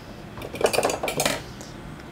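A round metal tin of Da Vinci brush-cleaning soap being lifted out of a crowded drawer, clinking and scraping against the things around it for about a second.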